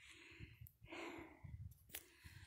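Near silence: two faint breaths close to the microphone, and a short click near the end. The high jet overhead is not heard.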